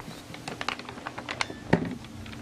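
A run of light, irregular clicks and rustles of a paper sheet being handled, with a short voice sound near the end.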